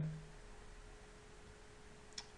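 Faint room tone: low hiss with a thin, steady hum.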